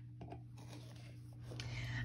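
Faint scratchy clicks and creaks of a hand screwdriver driving a small screw through a metal handle into a wooden lid, over a low steady hum. A hiss swells near the end.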